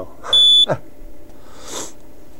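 A homemade Hall-effect magnetic field tester gives one short, high-pitched electronic beep of about a third of a second. The beep signals that its Hall sensors have picked up a magnet's field.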